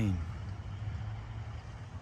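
Steady low hum of a motor vehicle engine running, under faint outdoor background noise, with a man's voice trailing off at the very start.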